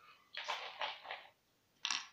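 Screw cap of a beer bottle being twisted by hand: a broken, rasping hiss for about a second, then a short sharper burst near the end.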